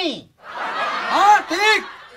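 A man's breathy snickering laugh, with two short rising-and-falling swells of the voice about a second in.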